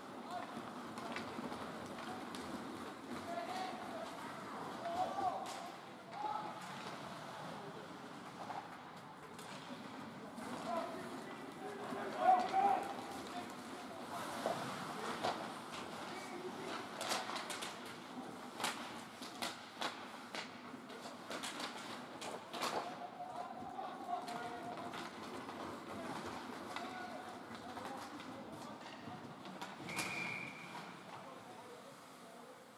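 Ice hockey rink during play: indistinct distant shouting from players and onlookers, mixed with scattered sharp clacks of sticks and puck on the ice and boards.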